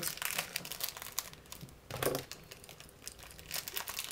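A sweet packet crinkling and rustling as it is pulled and worked at in an effort to tear it open, in a dense run of irregular crackles, with a brief vocal sound about halfway through.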